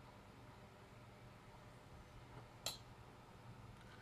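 Near silence with a faint steady low hum, broken once about two and a half seconds in by a single sharp computer mouse click.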